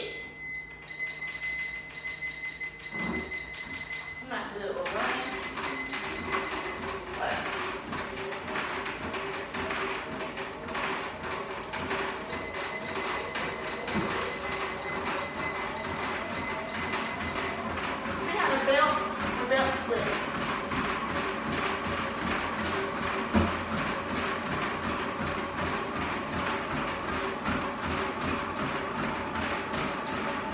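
Electric treadmill starting up about four seconds in, then running steadily with a hum and a belt rumble under a person's walking steps. A high steady electronic tone sounds before the motor starts.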